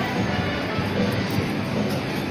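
Music from a coin-operated kiddie ride playing steadily.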